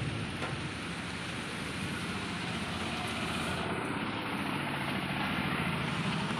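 Heavy rain falling steadily on a corrugated metal roof, a constant even hiss with no breaks.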